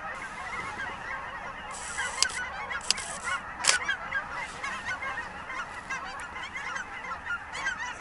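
A large flock of birds calling continuously, many short calls overlapping into one dense chatter. A few sharp camera shutter clicks come a little after two seconds in, just before three, and near four seconds.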